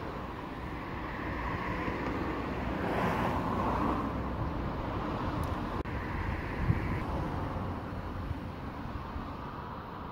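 Outdoor road traffic noise: a steady rumble, with a passing vehicle swelling and fading about three seconds in.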